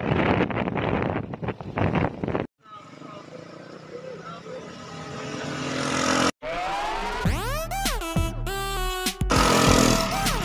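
Wind rushing over the microphone of a moving motorcycle, cut off suddenly about two and a half seconds in. A quieter noise then swells until another sudden cut, and music with sliding, held melody lines starts about six seconds in.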